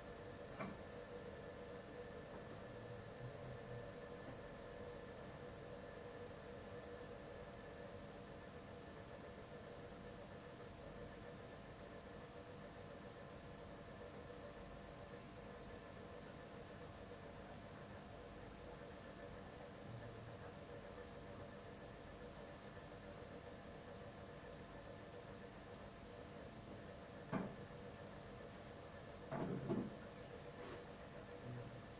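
Quiet room tone with a faint steady hum, broken by a short click about half a second in and a few brief knocks near the end.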